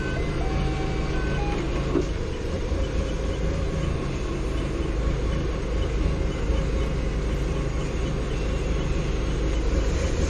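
Doosan 4.5-ton forklift engine running steadily, heard from inside the driver's cab.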